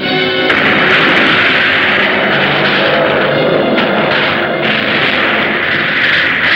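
Monster-movie soundtrack: dramatic music overlaid with dense, harsh destruction sound effects that start about half a second in, with a few sharp crashes and booms as the giant monster wrecks the tower.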